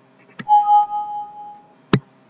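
A mouse click, then a Windows alert chime: a single ringing tone that fades away over about a second, signalling a PowerPoint warning dialog popping up. Another sharp mouse click comes near the end.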